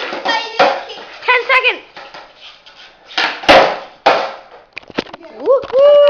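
Children shouting and yelling excitedly, with a sharp knock about three and a half seconds in and a couple of quick clicks a little later. Near the end a child calls out in a long, high voice.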